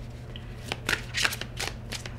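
A deck of tarot cards being shuffled by hand: a quick, irregular run of short papery flicks and slides.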